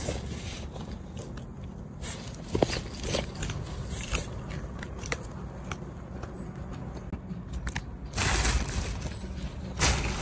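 Thin plastic bag crinkling and rustling as a macaque rummages in it for snack sticks, with scattered clicks and crackles. The rustling gets louder and denser near the end as the bag is pulled about.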